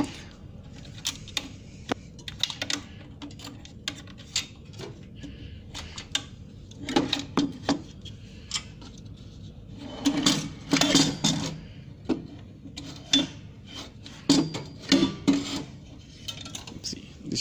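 Scattered light clicks, knocks and rubbing of a plastic laser unit against the sheet-metal frame and rails inside a Konica Minolta C6500-series copier as it is lifted out and handled, with busier patches of handling noise partway through.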